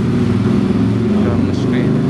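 Steady low engine hum of a running motor vehicle, with faint voices over it.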